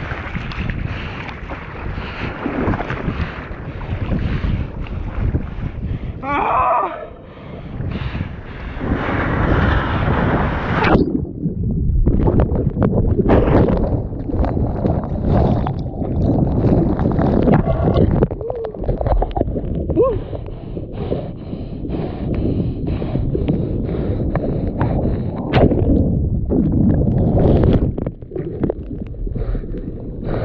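Surf and splashing water heard at a GoPro right in the breaking waves. About eleven seconds in, the sound turns muffled and rumbling, with scattered splashes, as a breaking wave pushes the camera under the churning whitewater.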